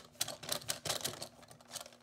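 Plastic clicking from a large Godzilla action figure as its tail action feature is worked by hand: a quick, irregular run of sharp clicks.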